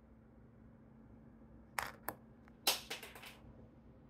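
Handling noise: a few sharp clicks and light knocks, two at about two seconds in and a quick cluster a second later, over a faint steady hum.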